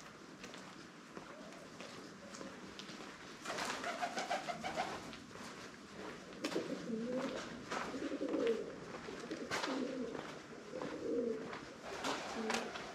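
Pigeons cooing, in two spells of low, wavering coos starting about three and a half seconds in, with a few scattered sharp taps.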